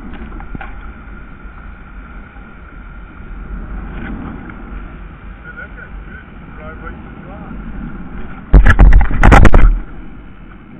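Steady wind rumbling on a kayak-mounted camera's microphone over choppy water. About eight and a half seconds in comes a loud burst of knocks and rumble, lasting just over a second.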